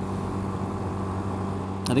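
1985 Honda Rebel 250's air-cooled parallel-twin engine running steadily at cruising speed, around 55 mph, in what the rider takes for fifth gear. A steady low drone with road and wind noise.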